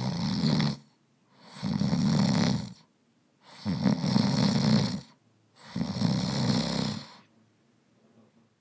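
Loud snoring: four long snores about two seconds apart, each a low rattling rasp.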